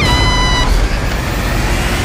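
A girl's high-pitched scream, rising and then held for about half a second before cutting off, over a loud rushing noise that goes on and stops about two seconds in.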